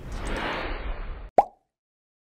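Low background hiss, then about 1.4 seconds in a single short pop sound effect with a quick falling pitch, used for a logo transition; after it the sound cuts out completely.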